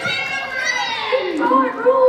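A crowd of children shouting and chattering over one another, with high voices calling out and drawn-out yells.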